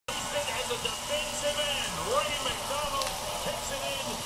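Sound of a televised football game played through a TV's speaker: stadium crowd noise with several voices at once over a steady background hiss.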